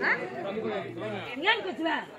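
People talking, several voices chattering over one another.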